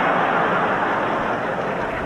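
Large audience laughing after a punchline: a dense crowd sound that swells just before and slowly eases off.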